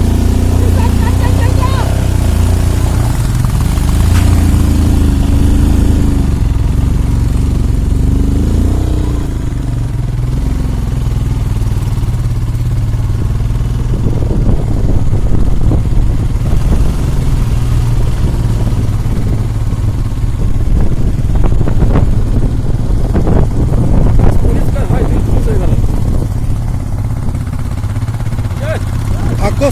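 Motorcycle engine running steadily while riding along a road, its note rising and falling a few times in the first nine seconds. From about fourteen seconds in, a rougher rushing noise joins it.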